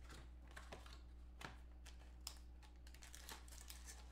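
Faint clicks and light rustles of a trading-card box being handled and opened: the lid lifted off and a white cardboard inner box slid out. A low steady hum sits underneath.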